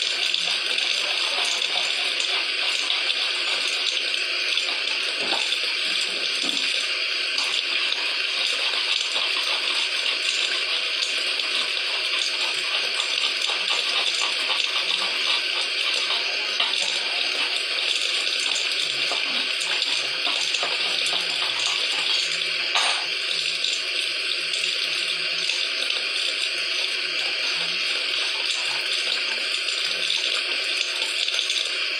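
A steady, even hiss that does not change, with no speech.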